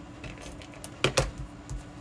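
A plastic tape runner and cardstock handled on a cutting mat: a few sharp plastic clicks about a second in, as the runner is drawn across the card and set down.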